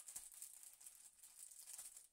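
Faint rustling and crinkling of a clear plastic packaging bag being handled, over quiet room hiss.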